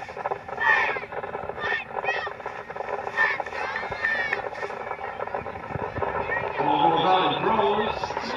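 Shouting voices at a youth football game: short separate shouted calls, like a quarterback's snap count and players' calls, then, from about six and a half seconds in, several voices yelling together as the play unfolds.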